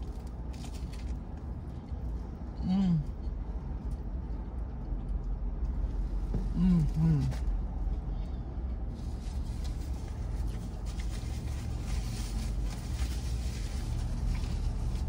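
Steady low rumble inside a parked vehicle's cab, with a few short falling 'mm' hums of enjoyment from a woman eating a sandwich: once about three seconds in and twice in quick succession around seven seconds.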